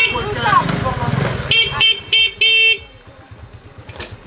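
Vehicle horn honking four times in quick succession, three short toots and then a longer one, over a voice.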